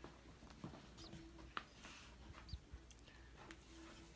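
Faint, brief high-pitched canary peeps, a few of them, among soft clicks and rustles of nest material, over a low steady hum.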